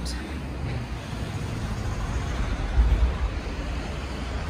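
Town street ambience with road traffic, and a low rumble swelling to its loudest about three seconds in.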